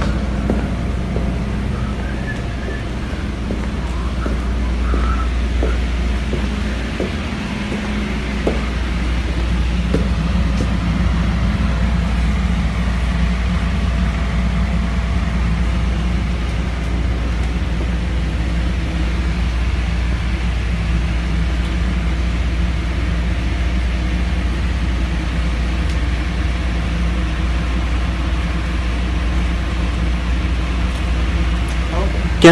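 Steady low rumble and hum of background noise inside a building, turned up in volume, with a few faint clicks in the first ten seconds.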